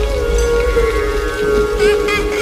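Heavy rain falling with a low rumble beneath it, under held, slightly wavering notes of a musical score that swell toward the end.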